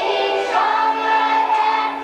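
Children's choir singing a song, holding long sustained notes.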